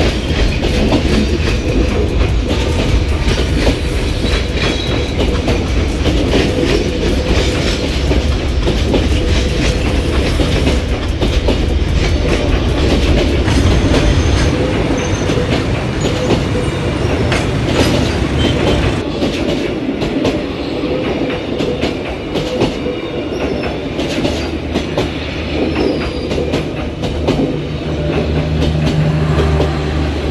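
Train running along the track, its wheels clicking over the rail joints, with a low rumble that eases about two-thirds of the way through.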